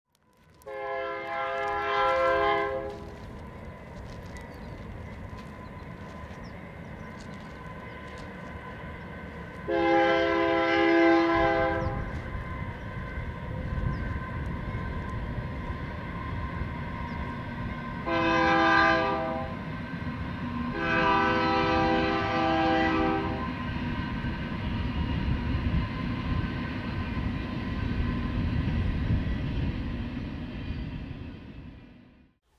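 Train horn sounding four blasts, long, long, short, long, over the steady low rumble of the train.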